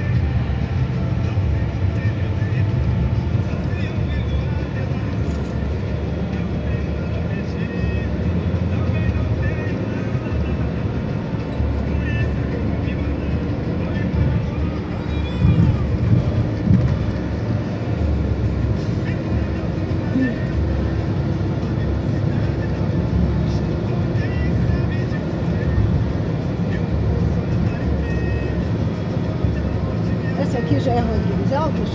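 Steady low road and drivetrain rumble inside a Ford Fusion sedan's cabin at highway speed, with a few louder knocks about halfway through.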